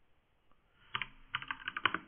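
Computer keyboard typing: near quiet at first, then a quick run of keystrokes starting about a second in.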